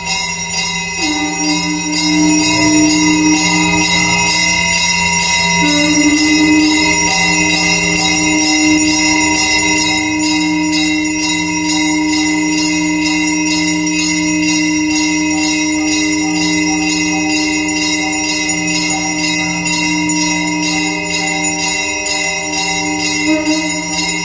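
Brass temple hand bell rung continuously in a fast, even rhythm during arati, over several held, droning tones.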